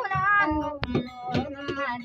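A woman singing with gliding pitch over a strummed acoustic guitar, with one sharp click a little under a second in.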